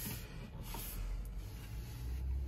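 Low steady background hum in a small room, with faint rustling and handling noise as the camera is moved.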